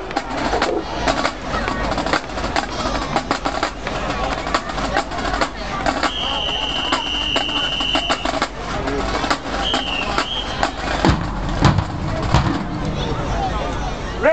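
Stadium crowd chatter with scattered taps and knocks. A whistle blows one long steady blast of about two seconds starting about six seconds in, then a short wavering blast near ten seconds, typical of a drum major's whistle cueing a marching band. A few heavy thumps follow near the end.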